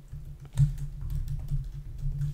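Computer keyboard keys clicking in quick succession as a short password is typed, starting about half a second in.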